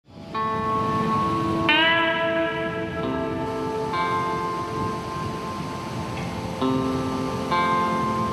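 Opening theme music of sustained, ringing pitched notes that change every second or so, with a note that slides up in pitch about a second and a half in.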